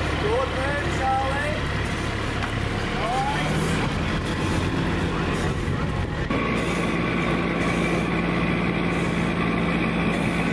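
A crash fire rescue truck's diesel engine idling steadily, with indistinct voices calling out in the first few seconds. About six seconds in the sound changes to a steadier hum with a higher whine.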